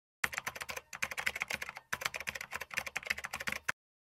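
Fast typing on keys: a dense run of sharp key clicks with a couple of brief pauses, stopping shortly before the end.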